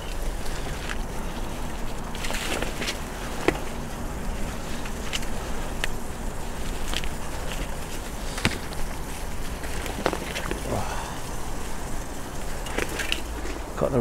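Bicycle tyres rolling over leaf litter and twigs on a rough dirt path: a steady low rumble with scattered snaps and ticks every second or two.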